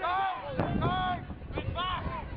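Football players shouting calls at the line of scrimmage before the snap, loud bursts of voice in the first second and again near the end. Wind rumbles on the microphone underneath.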